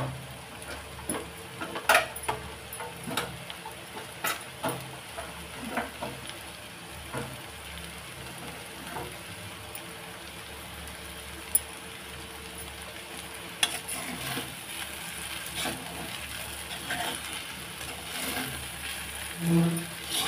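Chowmein noodles and vegetables frying in a kadhai over high heat, a steady faint sizzle, with a spatula stirring and knocking against the pan at irregular intervals. The knocks thin out in the middle and pick up again in the last several seconds.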